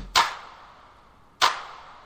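Sparse drum beat: a deep kick thud followed by sharp, reverberant backbeat hits about every one and a quarter seconds, with nothing else playing.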